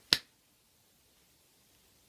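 A single sharp hand slap of a high-five, a bare hand striking a palm coated in sticky putty-like goop, just after the start.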